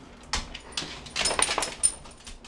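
Labrador/Boxer mix dog sniffing and snuffling hard at the edge of a closed door: a rapid run of short sniffs lasting about a second and a half, with a faint whimper mixed in.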